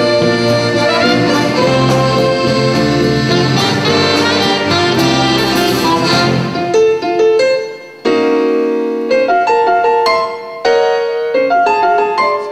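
A small band of saxophone, trumpet, trombone, accordion, piano, bass and drums playing an instrumental piece. About six and a half seconds in, the bass and drums drop away, leaving a sparser passage of separate notes and held chords.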